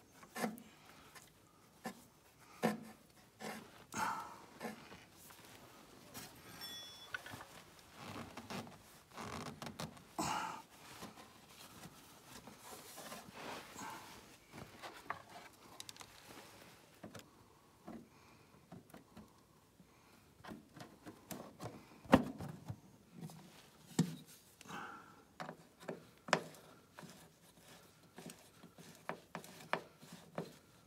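Scattered light clicks, rubs and knocks of hands and a tool fitting a metal access hatch onto a snowmobile's belly pan, with a single sharper knock about three-quarters of the way through.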